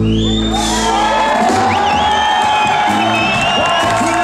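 Reggae-jazz band playing live, with the crowd whooping and cheering over the music; long, high, gliding whoops sound over the band for most of the stretch.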